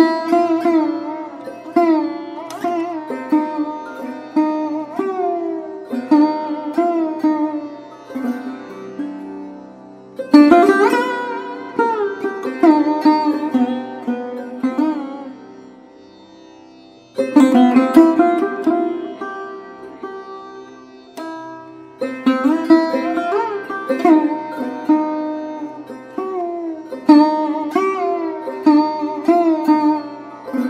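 Sarod playing a dhun in raga Mishra Pilu: phrases of plucked notes with slides between pitches, each note dying away, over a steady low drone. There is a brief lull just past halfway before a new phrase starts strongly.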